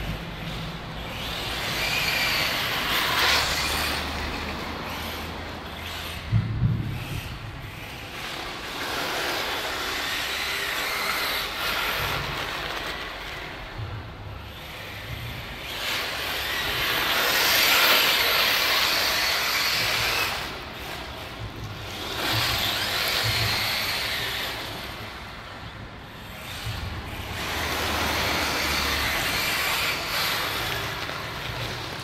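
Radio-controlled car driving on loose dirt, its motor and tyre noise swelling and fading every few seconds as it runs near and away, with one short knock about six seconds in.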